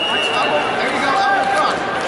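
Hubbub of an indoor arena crowd at a wrestling meet: many overlapping voices from spectators and coaches, with a brief high steady tone in the first second.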